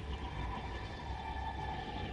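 Quiet film soundtrack: soft sustained notes held steady over a low hum.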